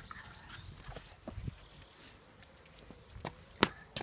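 Footsteps on paving slabs with faint handling rustle, and a few short knocks, the loudest a sharp one near the end.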